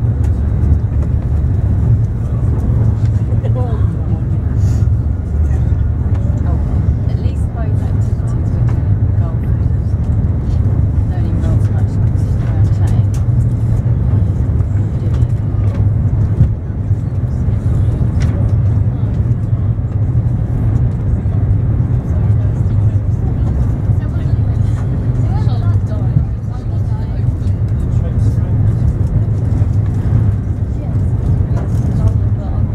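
Interior noise of a Eurostar high-speed train running at speed: a loud, steady low rumble heard inside the passenger carriage, with faint voices of other passengers.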